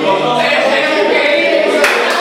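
Several voices singing or chanting together as a group, loud and continuous, with a short sharp knock near the end.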